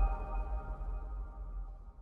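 The tail of a short electronic logo sting: a sustained chord of several steady tones over a deep low drone, fading out steadily.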